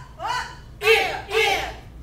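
Short, sharp vocal shouts, about two a second, each rising in pitch: kiai called out with the strikes and blocks of a martial-arts drill.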